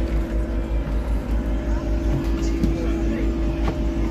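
Inside a double-decker bus: the running bus makes a steady, pulsing low rumble with a constant hum over it. Scattered small clicks and rattles come from the cabin.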